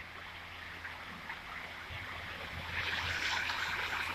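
Steady rushing splash of a pond fountain spraying water from the middle of the pond, growing louder and brighter about three seconds in.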